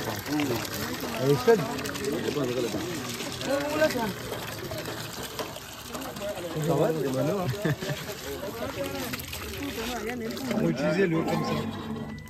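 Water pouring from the spout of a hand-cranked flywheel well pump into a bucket, under people talking throughout.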